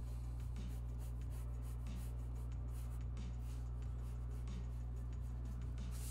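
Mechanical pencil scratching on paper in short, irregular strokes, over a steady low electrical hum.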